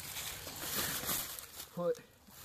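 Dry leaf litter rustling and crunching under shifting hounds and boots, a low scuffling noise that dies away after about a second and a half, followed by a man's short spoken word near the end.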